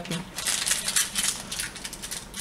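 Small plastic toy parts handled by hand: a quick, dense run of light clicks and rustling.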